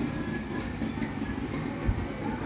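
Steady hiss and low rumble of background noise, with a soft thump near the end.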